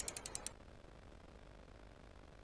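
A rapid run of about half a dozen light, high ticks in the first half second, the sound effect of an animated logo sting, then near silence.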